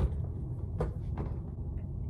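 Two light knocks, a moment apart, about a second in, like a cabinet or an object being handled, over a low steady room hum.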